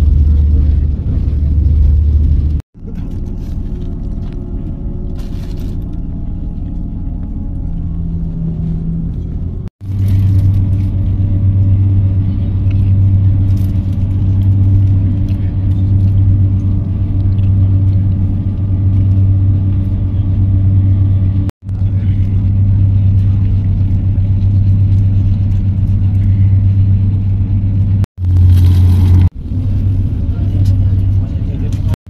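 Steady low rumble of a Renfe passenger train running at speed, heard from inside the carriage. The sound breaks off abruptly several times, with a quieter stretch a few seconds in.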